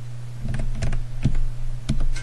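Computer keyboard being typed on: a password entered as a handful of separate, unevenly spaced keystrokes over a steady low hum.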